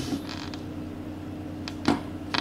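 Steady low electrical hum and faint hiss on the recording, with a short click near the end.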